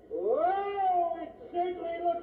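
A cat caterwauling: one long yowl that rises in pitch and holds, then breaks into shorter yowls near the end.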